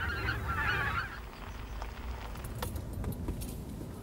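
A flock of wild geese honking, fading out about a second in. After that, a low steady rumble from a car rolling slowly along a dirt track, with a few faint clicks.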